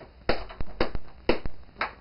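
A baby banging on a plastic toy activity table: four sharp knocks about half a second apart.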